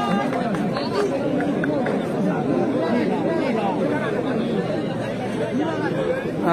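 Large crowd of spectators chattering: many voices talking over one another in a steady babble, with no single voice standing out.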